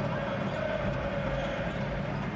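Steady crowd noise in a basketball arena, with no single loud event.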